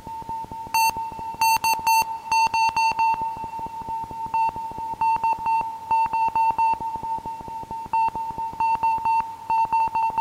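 Homemade modular synthesizer playing a fast, even train of short mid-pitched beeps, with higher, buzzier beeps joining about a second in and repeating in an uneven rhythm.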